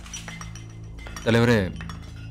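Movie soundtrack: a steady background score with a few faint metallic clinks, and a short, drawn-out, pitch-bending vocal sound from a man about a second and a quarter in.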